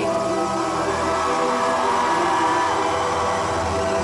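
Live concert sound: a sustained, droning chord from the band's amplified instruments, held steady throughout, over the hum of the crowd.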